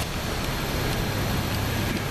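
Steady city street traffic noise: a continuous wash of passing-vehicle sound with a low, even hum underneath.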